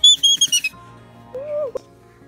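A toddler's very high-pitched squeals in a few quick bursts, then a short voiced 'ooh' about a second and a half in, over soft background music.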